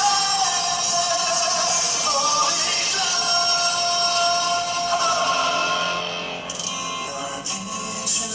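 Live concert recording of a male pop singer holding long notes over band accompaniment. The music gets quieter about six seconds in.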